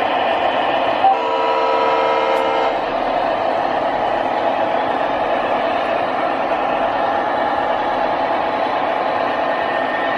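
Electronic horn of an MTH Premier O gauge model diesel locomotive's sound system, blowing one chord-like blast about a second and a half long that starts about a second in, just after a short click. Under it runs the model's steady diesel engine sound.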